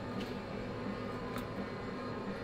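Steady background hum of arcade machines, with two faint clicks.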